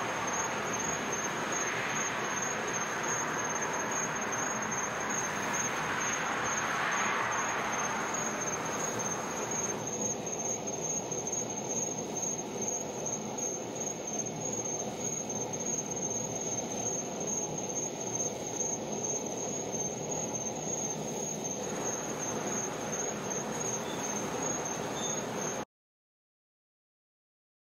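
Steady outdoor background hiss with a constant high-pitched whine running through it, starting and stopping abruptly.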